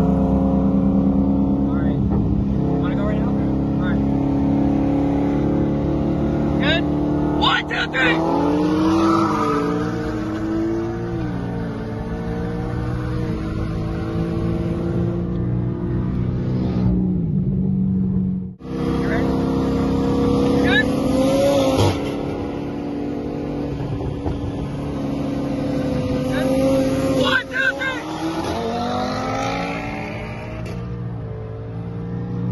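Car engine cruising steadily, then accelerating hard at full throttle during a highway roll race, its pitch climbing and dropping back, heard from inside the cabin. The sound cuts out briefly past the middle, then more hard pulls follow, with another climb near the end.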